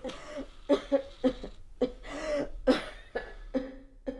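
A person coughing over and over in a string of short, rasping coughs.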